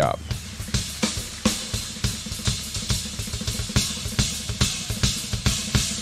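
Yamaha acoustic drum kit played in a blast beat: rapid, evenly spaced snare and bass-drum strikes driven together with cymbals.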